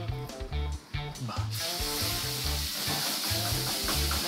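A raw New York strip steak laid into hot oil in a frying pan, sizzling steadily. The sizzle starts suddenly about a second and a half in.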